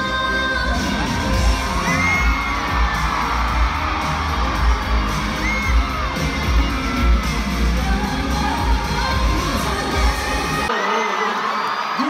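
K-pop dance track with a heavy, steady bass beat and singing, played loud through an arena sound system, with fans screaming and cheering over it. The music cuts off abruptly near the end, leaving crowd cheering.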